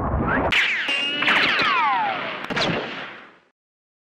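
An edited intro sound effect: a swelling whoosh, then a run of sharp cracks, each trailed by tones that fall in pitch. It fades out a little past three seconds in.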